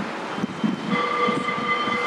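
A horn sounds a steady chord of several tones, starting about a second in, over a steady background noise.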